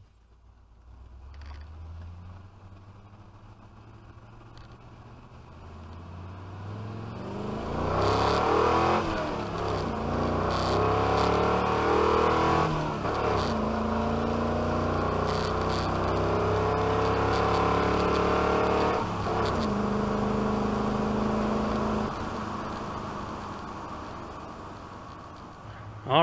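Carbureted 302 V8 in a 1970s Ford F-series pickup with a T5 five-speed manual, heard from inside the cab. It pulls hard through the gears, its note climbing between shifts with breaks at the shifts, then eases off near the end.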